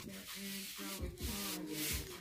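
Hands rubbing and pressing along glued EVA foam pieces, giving two scratchy swishes, one at the start and one near the end. Faint background music runs underneath.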